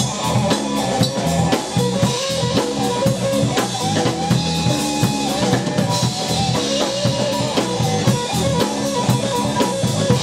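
Blues-rock power trio playing live: distorted electric guitar, electric bass and drum kit keeping a steady beat. The guitar plays a wavering line over the rhythm section, with no vocals.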